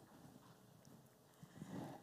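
Near silence: room tone, with a faint low bump of sound near the end.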